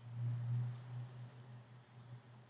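A low, steady hum that swells up right at the start, peaks about half a second in and fades back down over the next second.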